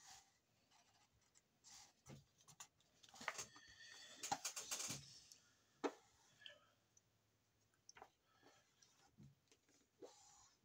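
A sheet of white paper rustling and crinkling as hands fold and press it flat. The rustling is faint and comes in short bursts, thickest about three to five seconds in, with one sharp tick near six seconds.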